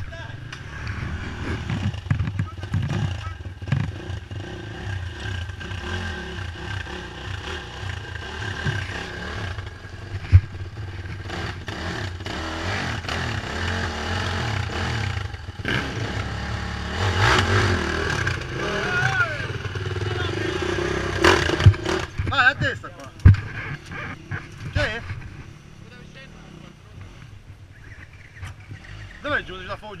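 Off-road enduro motorcycle engine running and revving unevenly as the bike climbs a rutted, muddy trail, with sharp knocks and clatter from the rough ground. It is loudest and busiest in the middle, with the sharpest knocks just after that, and drops to a lower, steadier running sound for the last few seconds.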